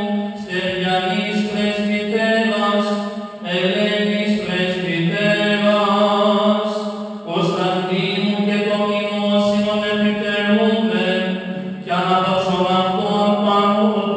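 Greek Orthodox Byzantine chant: a single voice sings a winding melody over a steady held drone note, in phrases with short breaks about every four seconds.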